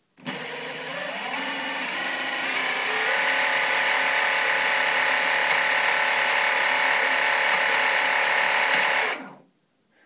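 Sensored brushless outrunner RC motor (EMP C80/100) driven by a 48 V Golden Motor controller, spinning up with a whine that rises in pitch over the first few seconds. It then holds a steady whine at about a quarter throttle and cuts off about nine seconds in.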